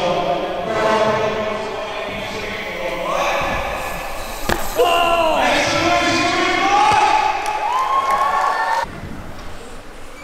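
Crowd of kids and riders shouting and calling out, with one sharp thump about four and a half seconds in followed by a long, loud drawn-out shout of reaction; the sound drops abruptly near the end.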